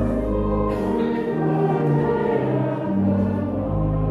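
A church congregation singing a hymn together, its voices stepping from one held note to the next over steady low sustained accompanying notes.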